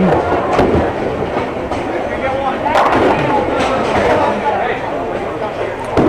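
Bowling alley: a bowling ball rolling down the lane and hitting the pins about three seconds in, with a sharp crash of pins over a steady rumble of other balls on nearby lanes.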